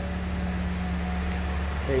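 2018 Nissan Rogue's 2.5-litre DOHC four-cylinder engine idling with a steady low hum.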